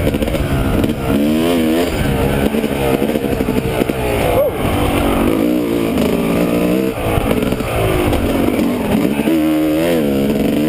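Yamaha YZ250 two-stroke dirt bike engine being ridden hard, its pitch climbing and dropping every second or two as the throttle is worked and gears change.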